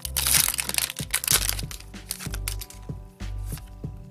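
Foil wrapper of a Pokémon trading-card booster pack being torn open and crinkling for about the first second and a half. Background music with a steady beat runs throughout.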